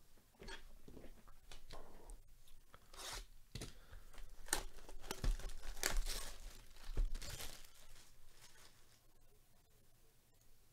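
Clear plastic shrink wrap being torn and peeled off a cardboard trading-card hobby box: a run of crinkling rips, loudest in the middle and dying down near the end.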